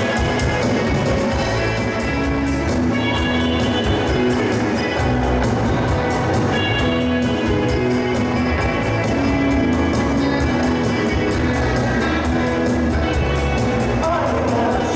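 A live rock band playing an instrumental passage in 1960s Jovem Guarda style: strummed acoustic guitars, electric guitar, bass and keyboard over a steady drum beat, with no singing.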